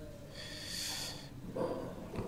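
A person breathing out through the nose close to the microphone: one soft hiss lasting about a second, followed by faint low sound near the end.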